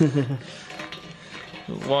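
Hand deburring tool's blade scraping round the edge of a bolt hole in a powder-coated frame, a faint metallic scraping as it trims the burr of powder coat from the hole's edge. A voice is heard briefly at the start and again at the end.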